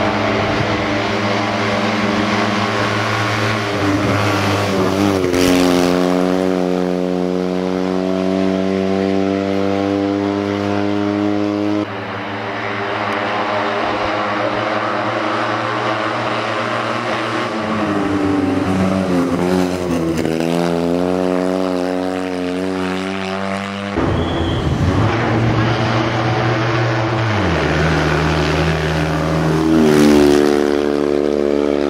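Fiat 126p rally car's air-cooled two-cylinder engine running at held, steady revs through long stretches. The revs drop and climb again about two-thirds of the way through, and the engine pitch jumps abruptly a few times.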